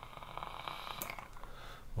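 A person taking a long, steady drag on an e-cigarette mod: a faint airy draw with fine light crackling, lasting about two seconds.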